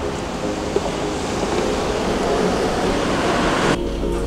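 Road traffic rushing past on a wet street, growing louder as vehicles approach, then cut off abruptly just before the end.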